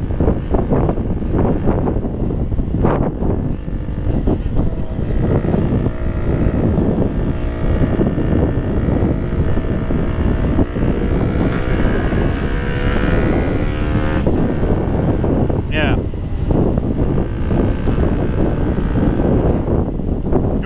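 KTM Duke motorcycle riding along a road, heard from the rider's helmet: heavy wind rush over the engine, whose pitch rises and falls in the middle as the throttle changes.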